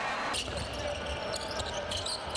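Basketball dribbled on a hardwood court over a steady arena background noise, with short sharp sounds of play from about half a second in.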